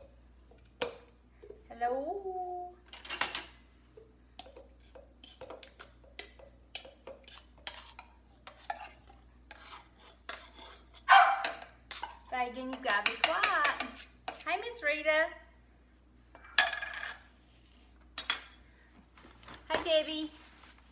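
A utensil knocking and scraping against a small metal can as chipotle peppers in adobo sauce are emptied into a blender cup, in many short clicks and taps. A dog barks and whines at times, most in the middle of the stretch.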